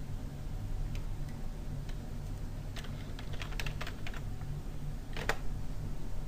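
Typing on a computer keyboard: a quick run of keystrokes about three seconds in, then a single louder click near the end, over a low steady hum.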